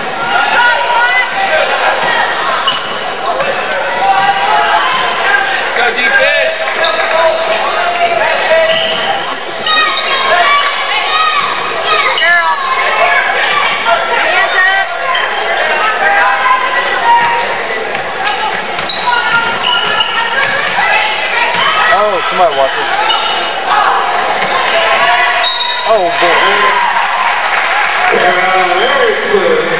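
Basketball game on a hardwood gym floor: a ball bouncing and players' shoes squeaking among a steady mix of many overlapping crowd and player voices, echoing in the gym.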